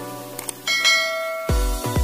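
Outro music with a subscribe-button sound effect: a short click about half a second in, then a bright notification-bell ding that rings for almost a second. About a second and a half in, an electronic beat with deep bass pulses starts.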